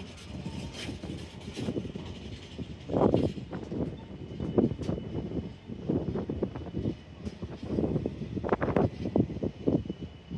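Intermodal freight train's container wagons rolling past at close range: an uneven clatter and rumble of steel wheels on the rails, with louder knocks about three seconds in and again near the end.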